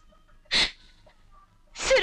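A crying woman's single sharp, breathy sob about half a second in, followed by her tearful voice starting up again near the end.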